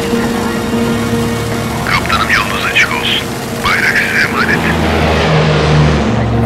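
Piston-engined propeller airliner running steadily, heard from the cockpit, under music. A short voice, like radio chatter, cuts in twice in the middle. A deeper drone builds near the end.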